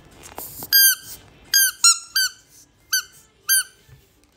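Yellow rubber duck squeeze toy being squeezed by hand, giving six short, high squeaks in an uneven rhythm, each dipping in pitch as it starts.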